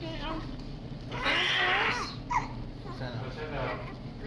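Newborn baby crying: one loud, wavering cry about a second in, with weaker cries before and after it.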